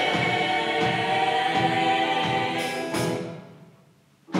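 Show choir singing a held chord in several parts. The chord fades away in the last second to a brief pause.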